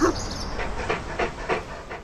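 A dog panting in quick, short breaths, about three a second, fading toward the end.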